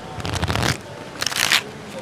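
A standard deck of playing cards riffle-shuffled in the hands: a rapid burr of flicking cards over the first three-quarters of a second, then a second, shorter burst a little past a second in.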